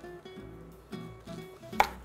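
Soft instrumental background music with steady held notes, and one sharp tap near the end of a kitchen knife against a wooden cutting board, with a fainter tap about a second in.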